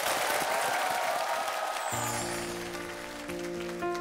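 Studio audience applauding, the clapping fading out over the first half. About halfway in, soft music with long sustained notes comes in.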